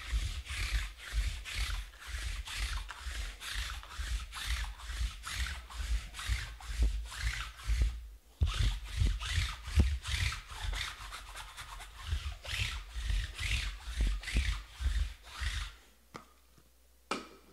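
A white roller being rubbed back and forth over the table's black mat, in quick repeated strokes, about two to three a second. The strokes pause briefly about eight seconds in, then carry on.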